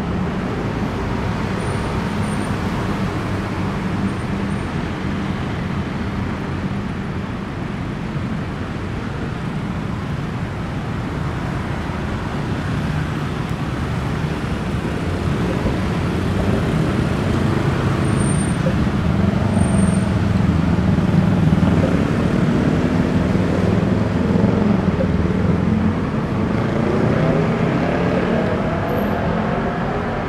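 Busy city road traffic: a steady wash of car and motorcycle engines and tyres, growing louder in the middle as vehicles pass close by.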